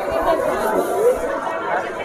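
Background chatter of several people talking at once, overlapping voices without any single voice standing out.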